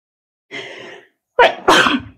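A woman sneezing: a breathy intake of breath about half a second in, then a loud, sharp sneeze near the end.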